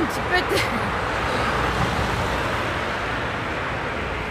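Steady hum of road traffic on a city street, with a few brief clicks and a short vocal sound in the first second.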